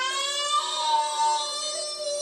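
A toddler singing without words: one long high note that slides upward and is then held.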